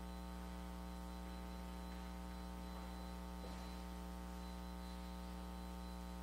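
Steady electrical mains hum, a low drone with a stack of even overtones, unchanging throughout.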